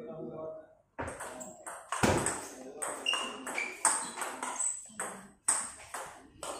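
A table tennis rally: the celluloid ball clicking off the bats and the table, about two or three sharp clicks a second, starting about a second in. One bat is faced with Pluto medium-pimple rubber.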